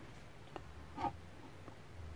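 Quiet room with a steady low hum and a few faint clicks as thin wire leads are handled between the fingers, with one brief faint higher-pitched blip about a second in.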